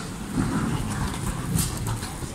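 Footsteps and luggage rolling over a hard stone floor in a busy terminal hall, with a couple of sharp clicks about a second and a half in.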